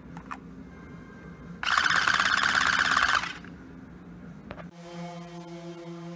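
Soggy Doggy toy's shaking mechanism setting off a loud buzzing rattle about a second and a half in, lasting under two seconds. Near the end a steady droning hum with several tones begins.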